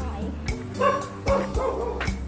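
A dog barking several short times over steady background music.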